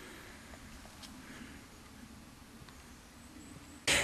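Faint woodland ambience: a soft, steady hiss of open air with one or two faint ticks, ending in a short louder burst just before the end.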